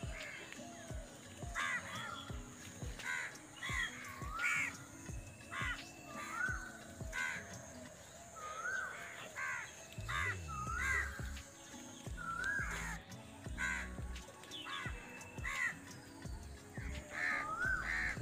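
Crows cawing over and over, short calls every second or so, over background music with a steady beat.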